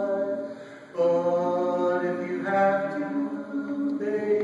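Male vocal quartet singing a cappella in harmony. The voices fade on a held chord, come back in together on a new chord about a second in, and change chord again near the middle.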